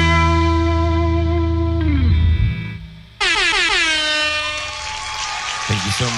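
A distorted electric guitar chord from the band rings out, sags in pitch and fades away about two and a half seconds in. About three seconds in, a sudden loud horn-like tone starts high, slides down in pitch and then holds steady.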